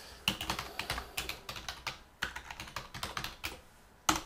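Typing on a computer keyboard: a quick run of keystrokes with a short break about halfway, stopping shortly before the end.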